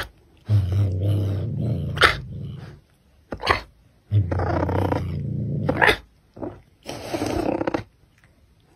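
Caracal growling low: three long growls, with short sharp breaths between them.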